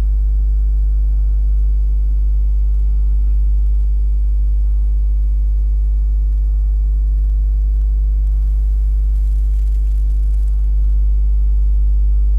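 Steady, loud low electrical hum with a stack of higher steady tones above it: mains hum picked up in the microphone's recording chain.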